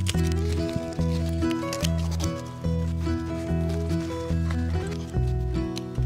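Background music: a steady rhythmic bass line with pitched notes changing about twice a second.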